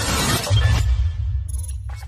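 Intro sound design: a glass-shatter effect over music with a steady deep bass, the high crashing sounds dying away toward the end.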